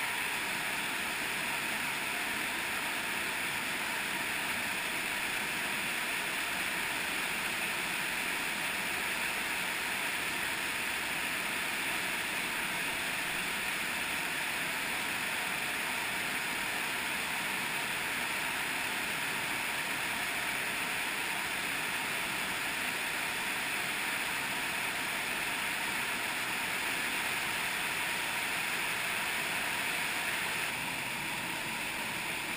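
Underground cave stream rushing over small waterfalls and rapids in a limestone streamway: a steady, even rush of water.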